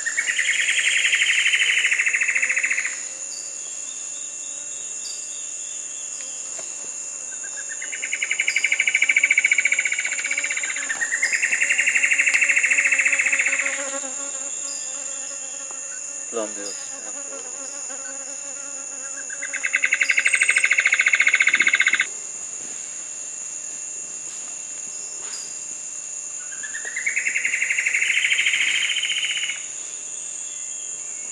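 Plumbeous antbirds, a female and a male, duetting: five loud songs, each a rapid run of notes lasting two to three seconds and rising at the start, with two songs overlapping about eight seconds in. A steady high insect drone runs underneath, and a short falling call sounds about halfway through.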